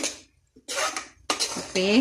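A steel spoon stirring thick vegetable kurma in an aluminium pressure cooker, scraping and knocking against the pot's sides: a sharp clack at the start, then two longer scrapes.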